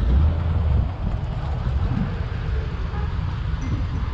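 Low, steady rumble of road traffic and vehicles, heaviest in about the first second.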